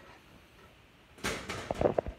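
Quiet room tone, then about a second in a brief, loud scraping rustle that ends in a sharp knock.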